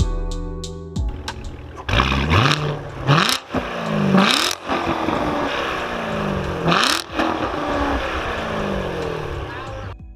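A C7 Chevrolet Corvette's V8 being revved in place about four times from about two seconds in, each rev climbing in pitch and then falling back, with sharp loud cracks at the peaks of several revs.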